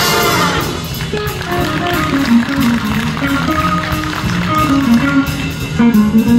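School jazz big band playing a blues. A full brass chord cuts off about half a second in, then the rhythm section carries on with drum cymbals and an electric guitar playing a line of single notes.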